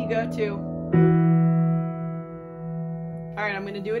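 Upright piano: a chord with a strong low note is struck about a second in and rings on, slowly fading. A few spoken words come at the start and near the end.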